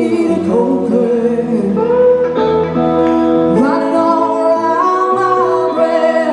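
Blues duo: a woman singing over a lap steel guitar played with a slide, its notes gliding up and down in pitch.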